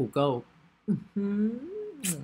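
A man's voice speaking Thai: a short spoken word, then a held hum of about a second that rises in pitch near the end.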